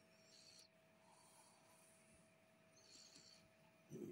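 Near silence: room tone with a faint steady hum, and soft rustling twice from a hand rubbing a cat's fur.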